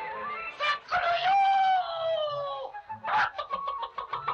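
Cartoon rooster crowing: one long call about a second in that slowly falls in pitch, between short clucks.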